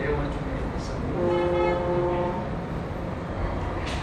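A horn-like steady chord sounding once for a little over a second, starting about a second in, over a steady low hum.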